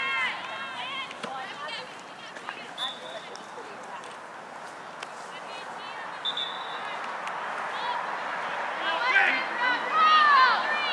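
Shouting voices of players and sideline spectators at an outdoor youth soccer game, with calls near the start and louder, more excited shouts near the end as play crowds in front of the goal.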